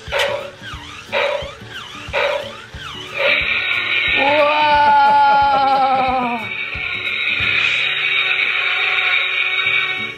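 Electronic sound effects from a battery-powered smoke-spray toy dinosaur: a few short growl-like calls, then from about three seconds a long steady hiss. Over the hiss comes a long recorded roar with a wavering, slowly falling pitch, as the toy sprays its red-lit mist.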